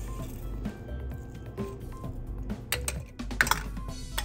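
Soft background music with a few light clicks and knocks of aluminium Nespresso capsules being handled in a basin of soapy water, the loudest pair of clicks about three and a half seconds in.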